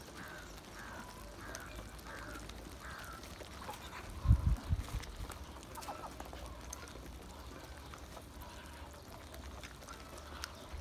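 Muscovy ducks calling with short notes, repeated about twice a second for the first few seconds and again briefly about six seconds in, while the flock feeds. A dull low thump about four seconds in is the loudest sound.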